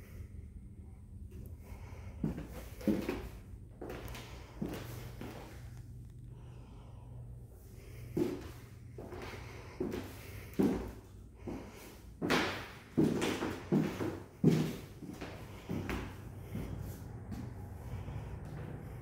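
Footsteps on a hardwood floor: an irregular string of dull thuds that comes closer together and louder in the second half, over a steady low hum.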